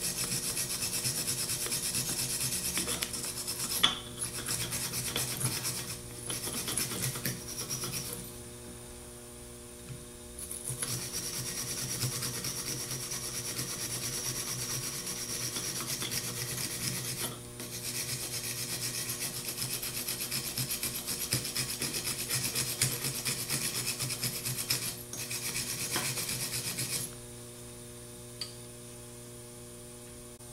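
Wire toothbrush scrubbing back and forth on the metal solder connection for the slip ring leads of a Ford 3G alternator, scouring off corrosion and oxidation before soldering. It comes in runs of steady scratching with short breaks and a longer pause, then stops near the end, leaving a low hum.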